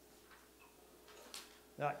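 Quiet room tone with a few faint, short clicks, the clearest about a second and a half in, then a man's voice starts near the end.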